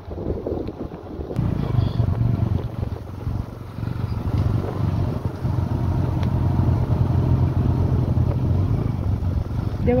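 Motorcycle engine running steadily while riding, heard from the pillion seat, with wind noise on the microphone; the steady engine hum settles in about a second and a half in.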